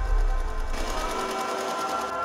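An electric sewing machine running fast, its needle stitching in a rapid, even ticking that comes up strongly a little under a second in. Under it are a low bass drone and steady musical tones.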